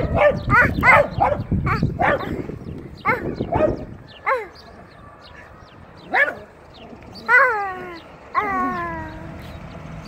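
A dog barking: a quick run of short, high barks, then scattered single barks and two longer yelps that fall in pitch about seven and eight seconds in.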